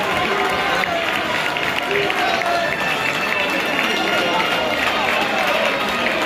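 Football crowd in a stadium: many voices talking and calling at once, holding a steady level as the teams walk out.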